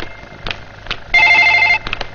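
Telephone ringing: one fast-trilling ring about a second in, lasting well under a second, with a few short knocks around it.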